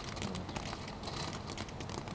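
A burning sparkler firework crackling: a dense, irregular patter of tiny pops over a steady hiss.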